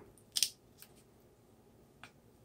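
One short scrape about half a second in, as a silicone spatula drags refried beans across a crisp blue corn taco shell, then a faint tick.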